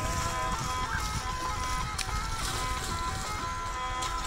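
Ukrainian lira (hurdy-gurdy) playing an instrumental passage: a steady drone under a stepping melody, with a low rumble underneath.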